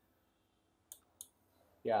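Two short, sharp computer mouse clicks about a third of a second apart, about a second in.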